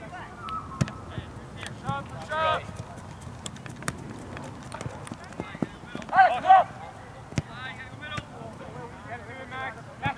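Soccer players shouting brief calls across the pitch during play, the loudest a pair of calls about six seconds in, with scattered sharp knocks of the ball being kicked and feet on artificial turf.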